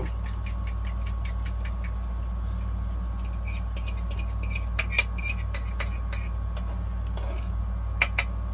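Food frying in oil in a pan on a stovetop burner, with small irregular crackles and pops over a steady low hum; a sharper click comes about five seconds in.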